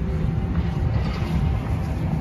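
Steady low rumble of heavy construction machinery at a building site.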